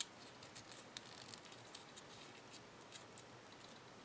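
Faint, scattered little clicks and crinkles of a folded paper star being pinched into shape between the fingers, over near silence.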